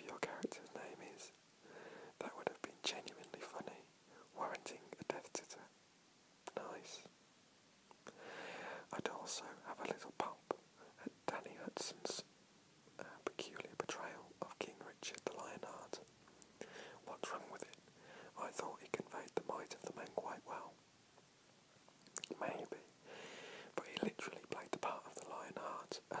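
A man whispering, reading aloud in soft unvoiced phrases with short pauses and small clicks between words.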